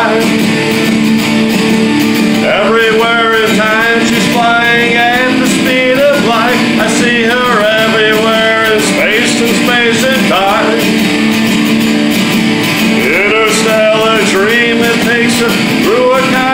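Electric guitar strummed in a steady rock rhythm, with a man's voice singing along in long, wavering phrases.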